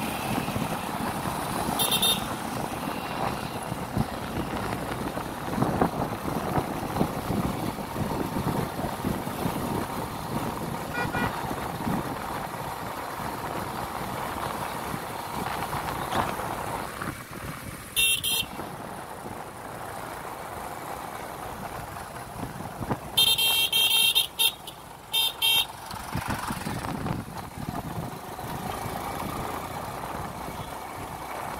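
Steady road and traffic noise heard from a vehicle moving along a road, with several short, sharp, high-pitched bursts: one a couple of seconds in, one past the middle, and a cluster near the end.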